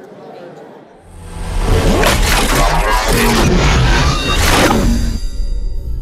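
Low murmur of the hall crowd for about a second, then a loud promoter's logo sting cuts in: music with deep bass and swooshing sound effects.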